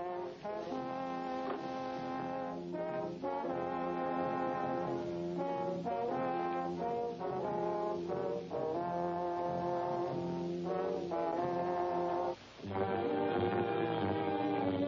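Orchestral cartoon score led by brass: a run of sustained notes and chords with short gaps between them. It drops out briefly near the end, then resumes.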